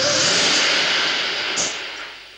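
Loud rushing, wind-like noise with no tune, as a film sound effect, fading away over the last half second.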